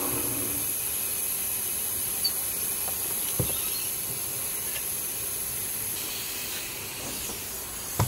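A steady high hiss, with two light knocks about two and three and a half seconds in as wood strips are handled.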